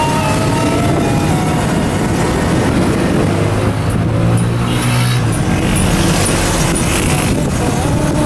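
Road traffic and a vehicle engine heard from inside a moving vehicle on a busy street, with a steady low drone that swells in the middle.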